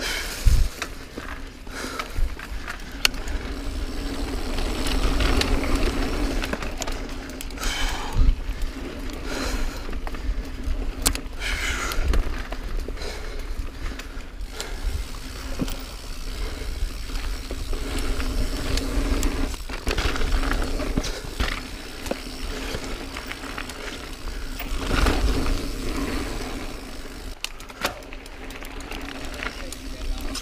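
Niner Jet 9 RDO full-suspension mountain bike riding a dirt singletrack: steady tyre rolling noise on packed dirt, with the bike rattling and a few sharp knocks over bumps and roots.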